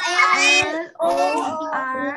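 A child's high voice singing, with a short break a little before one second in.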